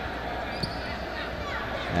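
A basketball bouncing a few times on the hardwood court, over a steady arena background with faint voices.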